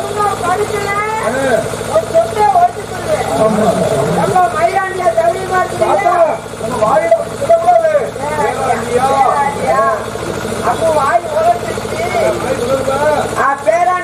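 A man's voice talking loudly and continuously through a stage microphone and loudspeakers, with a steady hum underneath.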